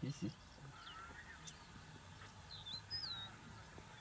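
Faint wild birdsong: several short whistled chirps that bend up and down in pitch, the clearest a little before the three-second mark. A brief low voice-like call sounds right at the start.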